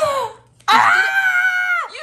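A woman's excited, high-pitched squeal, held steady for about a second and dropping in pitch as it ends, after a short vocal exclamation at the start.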